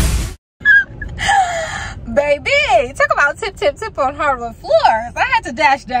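A dance-music track cuts off just after the start. Then a woman, out of breath, lets out a breathy gasp about a second in and goes on laughing and vocalizing in a rising-and-falling, sing-song voice.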